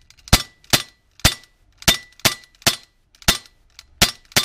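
Umarex 9XP BB pistol's metal slide cycling, about eight sharp clacks in quick, uneven succession, roughly two a second.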